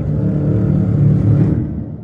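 Low rumbling drone of horror-trailer sound design, swelling to a peak about a second in and fading out near the end.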